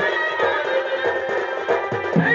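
Live Chhau dance music: a double-headed dhol drum played in fast, even strokes, its low note dropping on each stroke, under a held, wavering wind-instrument melody.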